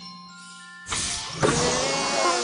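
Cartoon soundtrack: soft held music notes, then a sudden loud rushing sound effect about a second in, followed by a loud wavering whine.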